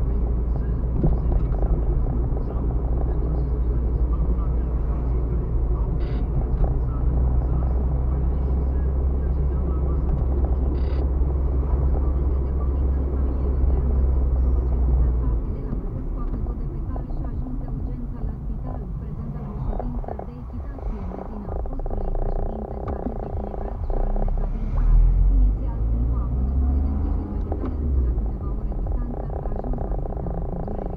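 Car interior noise while driving on a city street: a steady low rumble of engine and tyres that eases off about halfway through.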